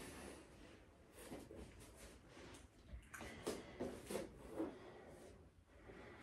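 Faint rustling and breathing of a person shifting on an exercise mat, as several short, soft bursts mostly in the second half.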